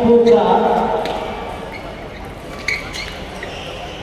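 A man's voice over the public-address system echoes in a large sports hall and trails off about a second in. Then come the hall's murmur and a few sharp clicks of table tennis balls striking tables and bats.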